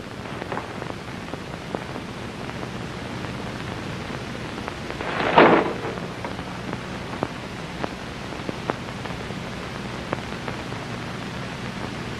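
Steady hiss and low hum of an old film soundtrack, with scattered faint clicks of crackle. A short burst of noise comes about five seconds in.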